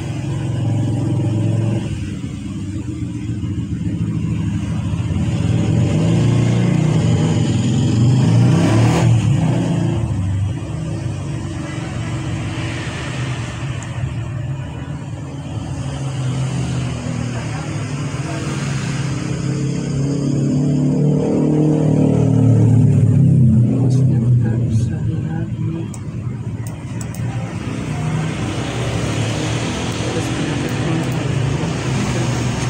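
Low rumble of motor vehicle engines, swelling and fading slowly, loudest about nine seconds in and again near the end.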